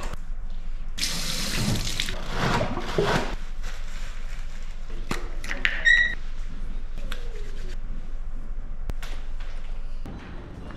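Water from a bathroom tap running and splashing into a sink, loudest between about one and three seconds in, with small clicks and knocks. A short high tone sounds once about six seconds in.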